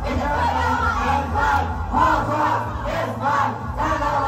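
A group of people singing and shouting along together into a karaoke microphone over a loud backing track with a heavy bass.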